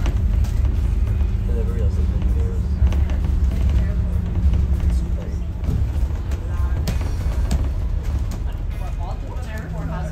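Low, steady rumble of a bus driving, heard from inside the bus, with indistinct voices and background music over it.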